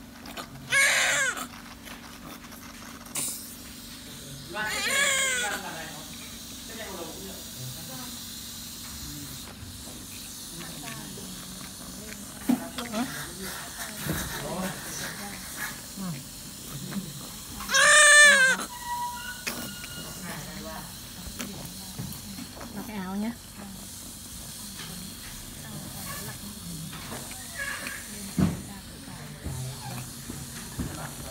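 Newborn baby crying very loudly in separate high-pitched wails: a short one about a second in, a longer one around five seconds, and the loudest a little past the middle, with quieter whimpers in between. A low steady hum runs underneath.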